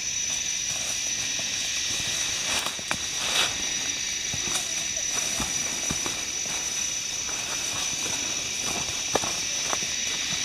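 Steady high-pitched drone of forest insects, several shrill tones held throughout, with footsteps crunching and rustling through dry leaf litter on a trail.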